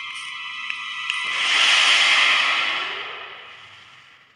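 Anime episode soundtrack playing back: sustained music tones that stop about a second in, giving way to a rushing whoosh that swells, peaks around two seconds in and fades away.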